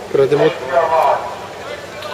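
A voice speaking briefly, twice in the first second, over the steady background noise of a crowd at a poolside.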